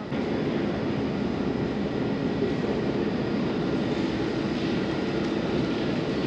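Steady drone of air-conditioning and ventilation fans, unbroken and even.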